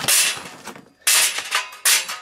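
Charcoal briquettes dropped into a metal chimney starter, clattering against the metal and each other in two bursts about a second apart.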